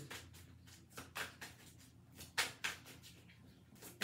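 A tarot deck being shuffled by hand: a handful of short, sharp card snaps and flicks at uneven intervals.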